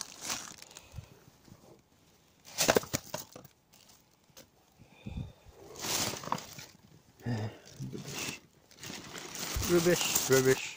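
Plastic rubbish bags rustling and crinkling in a few short bursts as they are rummaged through by hand, with some wordless muttering near the end.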